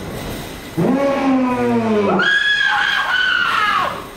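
Vocal yelling: a low yell that rises and falls from about a second in, then a long high-pitched scream held for nearly two seconds.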